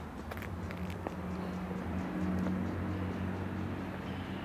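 Low, steady engine hum of a vehicle on the street, swelling slightly in the middle, with a few faint ticks early on.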